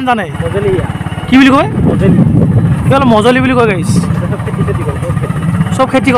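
Small motorcycle engine running steadily under way, a low rumble with a fast even pulse. A voice calls out briefly twice over it.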